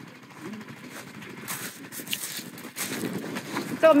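A few faint clicks and knocks from handling the open cab door of a side-by-side UTV, against a quiet outdoor background.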